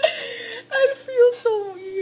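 A woman laughing hard in a high, whimpering, drawn-out way. The laugh breaks into short pieces at first, then turns into longer notes that slide down in pitch.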